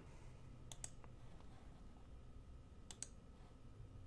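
Near silence with a few faint computer clicks: a couple about three-quarters of a second in and another couple about three seconds in.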